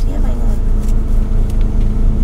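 Steady low drone of a parked car running, heard from inside the cabin, with a constant hum.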